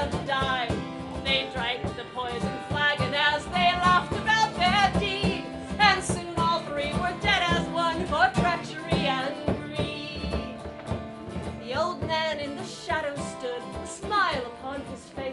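A woman singing a folk ballad live, her voice carrying a wavering melody over steady plucked-string accompaniment.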